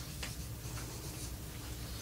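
Dry-erase marker writing on a whiteboard in a few short strokes.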